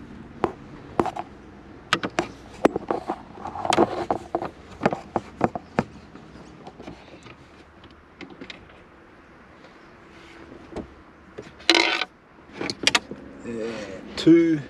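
Irregular clicks, taps and knocks of hand tools and plastic trim in a car dashboard as an old aftermarket head unit is worked loose for removal, with a short scraping burst near the end.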